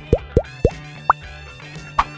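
Cartoon sound effects: quick rising 'plop' pops, three close together and a fourth, higher one about a second in, with a short one near the end, over light background music.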